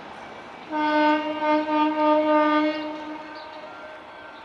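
A General Motors G-12 diesel locomotive's horn sounds one blast of about two seconds, a single steady note that wavers slightly in loudness and then fades, over the low, steady running of the locomotive.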